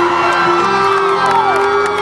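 Rock band playing live in an arena, a held note running under sliding higher pitches, with whoops and cheers from the crowd over the music.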